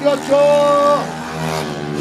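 A man's voice holding one drawn-out word at an even pitch, as a race announcer calls out a rider. Under it, and more plainly in the second half once the voice drops off, a motorcycle engine keeps up a steady low drone.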